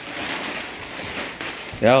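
Plastic wrapping rustling and crinkling as a plush toy is handled in its bag. A child calls out briefly near the end.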